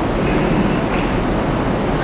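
Steady room noise: a continuous hiss with a low hum underneath, with no distinct event.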